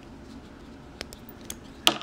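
A few small, sharp plastic clicks from handling the Fitbit Charge 3 tracker and its detachable band, with the loudest click near the end.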